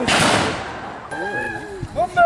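A single loud black-powder gunshot right at the start, its report dying away over about half a second, followed by people's voices.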